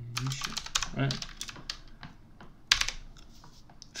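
Typing on a computer keyboard: a quick run of keystrokes through the first two seconds, then a short cluster of louder keystrokes just under three seconds in.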